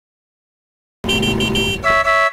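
A horn sounding after a second of silence: three short, quick beeps over background noise, then a longer steady blast near the end.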